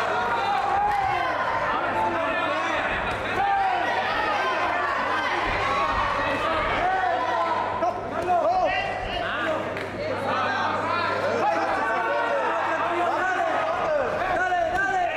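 Spectators shouting and calling out together, many overlapping voices with no single clear speaker, over a steady low electrical hum.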